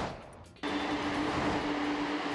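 A short transition swoosh fading out, then a sudden cut about half a second in to steady outdoor machine and traffic noise with a constant low drone.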